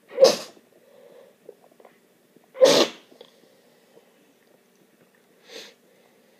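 Three sneezes: one just after the start, a louder one about two and a half seconds in, and a quieter one near the end.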